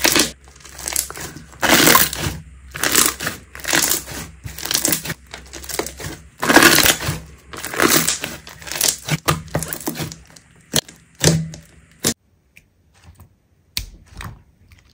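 Thick slime being kneaded and squeezed by hand, a crackling squish with each press, roughly two a second. The sounds stop about two seconds before the end.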